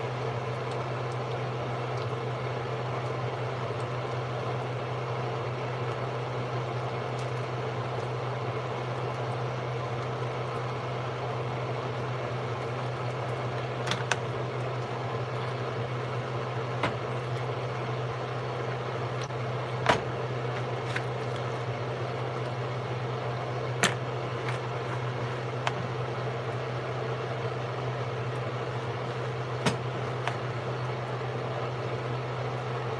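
A steady low mechanical hum, with a few light knocks and clicks from hands working seasoned chicken pieces in a plastic mixing bowl.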